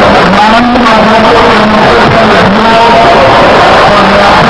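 A man's voice amplified through a public-address system, loud and distorted, over a steady noisy haze.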